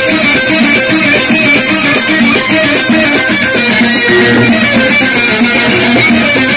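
Loud live folk music played through a PA system, led by an amplified plucked string instrument playing a quick run of short repeated notes.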